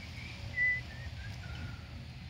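A person whistling a short tune: a run of brief notes that climbs, then steps down in pitch, the loudest about half a second in, over a low rumble of wind on the microphone.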